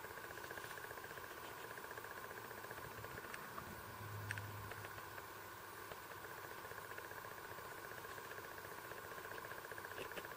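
Faint steady buzz throughout, with one light click about four seconds in as the spring-hinged flip-up sunglass lenses are raised.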